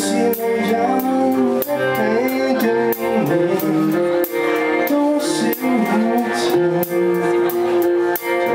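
Live rock band playing: electric guitars and drums with cymbal hits on a steady beat, under a male lead singer.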